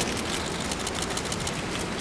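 Rapid, continuous clicking of many camera shutters over a steady hiss of hall ambience.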